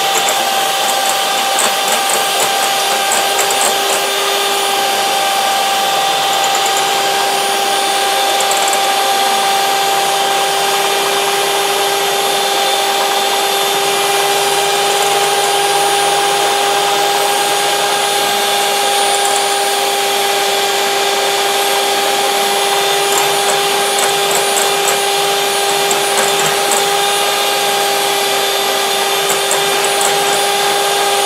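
Electric hand mixer running at a steady speed, a constant motor whine, its beaters whisking eggs and sugar in a glass bowl.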